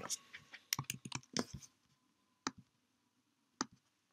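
Faint, irregular clicks at a computer: a quick cluster in the first second and a half, then two single clicks about a second apart.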